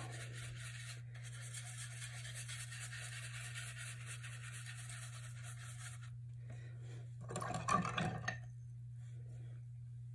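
Paintbrush bristles scrubbing in small circles on paper, a steady scratchy rubbing for about six seconds as yellow paint is worked into wet blue (scumbling). A brief, louder rustle and knock comes about seven and a half seconds in.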